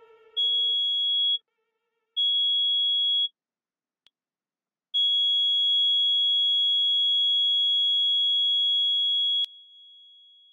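A pure, high, steady electronic tone from the piece's fixed-media track sounds twice, about a second each, then holds for about four and a half seconds before cutting off with a click and a short fading ring. At the start, the tail of a lower wind-instrument note dies away.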